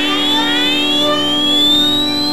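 A live rock band's electronic tones: a steady low drone held under several pitched tones that glide slowly upward.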